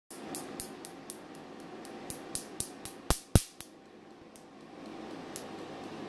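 Q-switched laser firing on eyebrow permanent makeup, a sharp snap with each pulse as it breaks up the pigment, about four snaps a second, the last two of the run loudest. The steady run stops a little past halfway, and a few single snaps follow about a second apart over a steady low hum.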